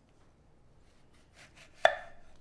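Kitchen knife cutting through a lemon on a wooden cutting board, ending in one sharp knock of the blade on the board near the end.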